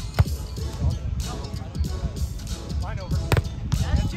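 A beach volleyball struck by hand twice: a sharp slap of the ball just after the start and another past three seconds in, over wind rumble on the microphone.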